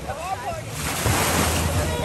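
Ocean surf washing against the rocks and shore, swelling louder about a second in, with people's voices in the background.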